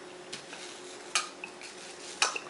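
Ice clinking in a drinking glass as it is tipped up for a drink: a faint click, then a sharper clink just after a second in.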